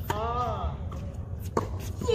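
A tennis racket striking the ball on a serve, with a short voice call right after it, then a second sharp racket strike about a second and a half later as the ball is hit back.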